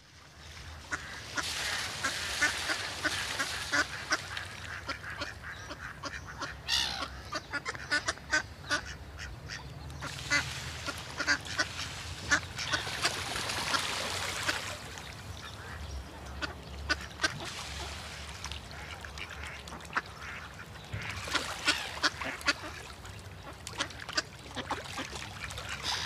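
Ducks quacking in several bouts of a few seconds each, over a low steady hum.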